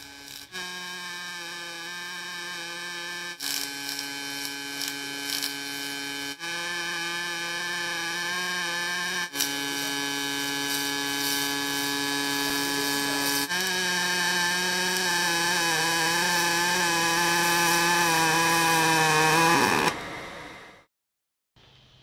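A pulsed MIG welding arc on a Migatronic machine buzzing steadily. The audio switches several times between PowerArc Pulse and regular pulse welding, which buzz at different pitches. The buzz grows slightly louder as the welds go on, and it stops a couple of seconds before the end.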